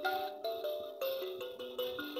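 Mbira played with both thumbs: a steady run of plucked metal-key notes, about four or five a second, each ringing on and overlapping the next.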